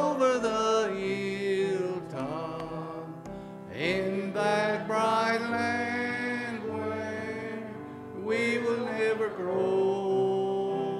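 A man singing a slow gospel hymn into a microphone in long held phrases, over a musical accompaniment.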